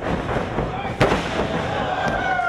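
A wrestler slammed down onto the wrestling ring mat: one loud bang about a second in, over a background of crowd voices.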